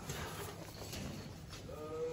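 Paper rustling as sheets and documents are handled, with a brief pitched sound, rising slightly then held, near the end.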